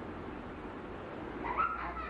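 Steady hiss with a low hum, and near the end a brief high-pitched call from a small animal.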